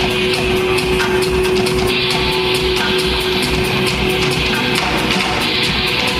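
A rock band playing live: electric guitars over a steady beat, with one note held throughout, in an instrumental passage without singing.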